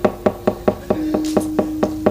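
The wayang kulit puppeteer's wooden knocker (cempala) striking the puppet chest and keprak plates in a quick, even rhythm of about four to five knocks a second, as he moves the puppets. A steady held low note joins about halfway through.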